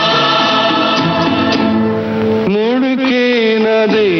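A Hindi film song with orchestral accompaniment. About two and a half seconds in, a solo voice begins singing long notes with vibrato over the backing.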